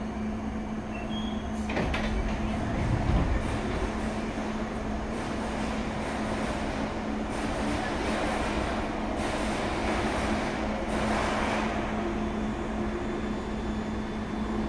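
Steady low hum from a London Underground Piccadilly line train, a 1973 Tube Stock car, standing at a platform. About two seconds in, its sliding doors open with a clunk and a short low rumble.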